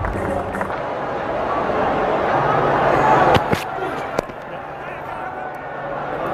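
Cricket ground ambience with a haze of distant voices that swells and then thins. About three and a half seconds in comes a sharp crack of bat on ball, with a second click just after it.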